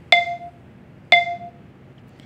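iMovie's voiceover countdown on an iPad: two short beeps one second apart, each a clear ringing tone that fades quickly, counting in before the recording starts.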